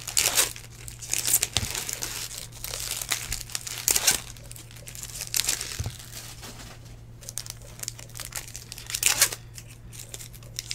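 Foil trading-card pack wrappers crinkling and tearing as packs are ripped open by hand, in several irregular bursts.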